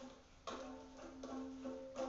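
A faint musical note held steady for about a second and a half, with a few light strikes over it.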